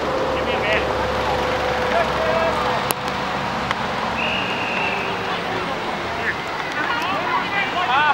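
Open-air ballgame sound: players shouting across the field, faint and scattered, over a steady rush of wind on the microphone. A short high steady tone sounds about four seconds in.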